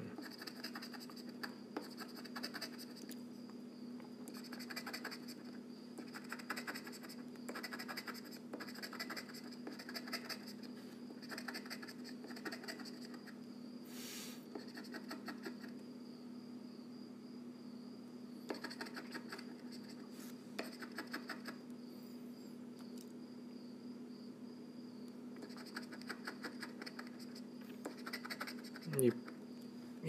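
Lottery scratch-off ticket being scratched off: short bursts of quick scratching strokes with brief pauses between them, and a couple of longer pauses in the middle.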